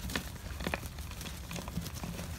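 Gloved fingers scratching into the side of a plumeria's root ball to loosen the roots: faint crackling and scratching of soil and fibrous roots, with a few sharper clicks, over a low steady hum.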